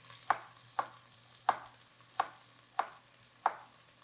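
Chef's knife slicing through fresh ginger root and hitting a wooden cutting board, six crisp chops about two-thirds of a second apart.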